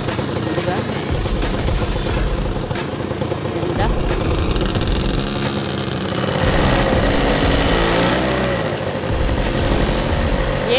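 Rented motorbike engines running, with people's voices mixed in.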